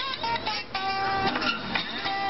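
Acoustic guitar being strummed and picked, chords and single notes ringing on.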